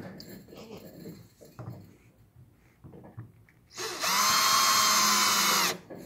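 Cordless drill driving a small stainless steel screw into a pedal boat's plastic hull: a steady motor whine for about two seconds, starting a little past halfway and cutting off suddenly. Before it come faint clicks as the screw is set on the bit.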